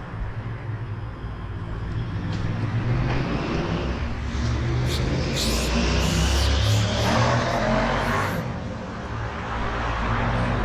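Aerosol spray-paint can hissing in several short bursts over a steady low traffic rumble.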